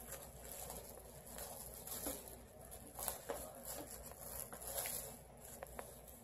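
Faint crinkling and rustling of plastic wrap as brownies are unwrapped, with scattered small ticks and crackles.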